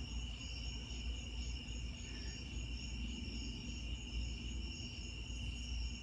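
A steady chorus of crickets trilling at one unchanging high pitch, with a low rumble underneath.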